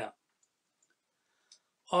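A pause in a man's speech: near silence with a single faint click about one and a half seconds in. His voice trails off at the start and resumes near the end.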